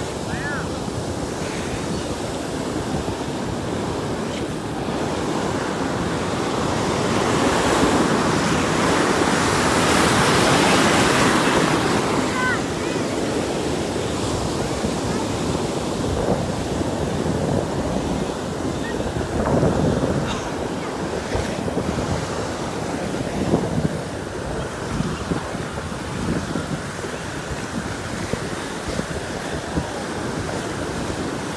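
Ocean surf washing through shallow, foamy water, with wind on the microphone. The rush swells louder for several seconds about a third of the way in, then eases back.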